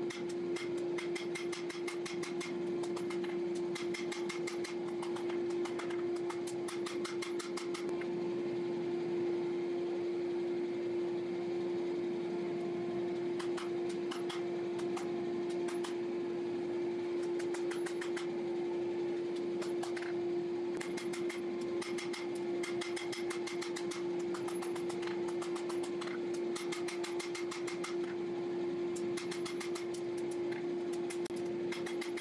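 Rapid hammer blows on a hot steel billet on an anvil, in runs of quick strikes with short pauses about eight seconds in and about twenty seconds in, over a steady machine hum.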